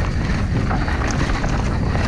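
Wind rushing over the camera's microphone as a downhill mountain bike runs fast down a dry, rough dirt track, with tyre noise and short rattles from the bike over the bumps.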